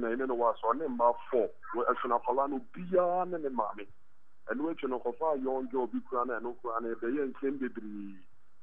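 Speech only: a voice talking in a steady flow, with a short pause about four seconds in.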